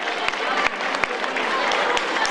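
Audience applauding, with scattered claps over a steady crowd of voices chattering.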